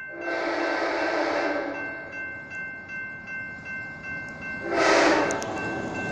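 Approaching passenger train's locomotive horn sounding for a grade crossing: one long blast near the start and a shorter one near the end. Behind it the crossing's warning bell rings steadily.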